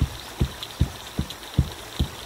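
Footsteps: a steady run of low, evenly spaced thuds, about two and a half a second.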